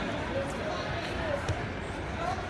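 Indistinct background voices talking in a large hall, with a single dull thump about a second and a half in.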